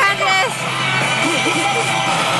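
A Pachislot Hokuto no Ken Tensei no Shou machine plays its battle sound effects, music and a voice line over the constant din of a busy pachinko hall. A rising burst of tones comes at the start.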